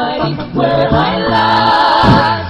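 Male a cappella vocal group singing without words. Short percussive vocal hits run through the first second, then the voices hold a sustained chord.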